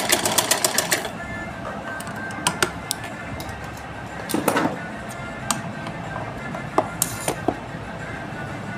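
Sewing machine running fast, about eight stitch strokes a second, as a seam is locked off; it stops about a second in. After it come scattered clicks and a brief rustle of the cotton cloth being handled.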